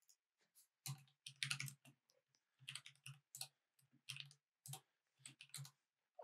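Computer keyboard being typed on: a run of faint, separate keystrokes in uneven groups, starting about a second in.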